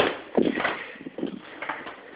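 A door being opened and pushed through, with several soft knocks and scuffs of footsteps.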